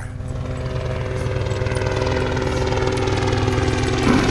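Helicopter flying overhead: a rapid rotor chop under a steady engine whine. The pitch drops slowly and the sound grows a little louder as it passes.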